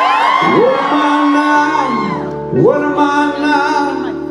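Live band ballad: a male lead singer holds and bends a long, sliding vocal line over the band's sustained chords, with a second, shorter rising phrase about two and a half seconds in.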